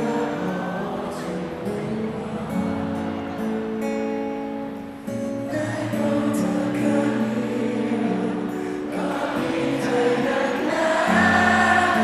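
Live rock band playing a song with singing and long held chords, heard in a large hall from among the audience.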